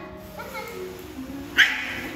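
A Chihuahua gives one short, high yip about one and a half seconds in, over faint background music.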